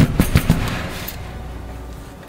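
A plastic pouring pitcher set down on a glass-top stove: a few quick sharp knocks in the first half second, then fading away.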